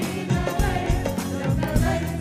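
A small live chorus of male and female voices singing together through stage microphones over a rhythmic drum-and-percussion backing.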